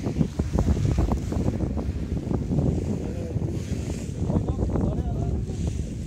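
Wind buffeting the camera's microphone, a steady gusty low rumble, with faint voices behind it.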